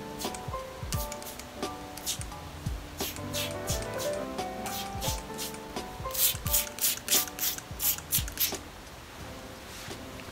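Background music with held notes over a steady beat. Partway through, a hand-pumped spray bottle gives a quick run of short squirts, about three a second, misting liquid onto hair.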